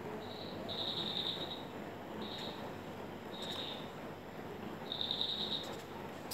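Insect chirping in short high trills, five of them, the longest about a second, over faint room noise.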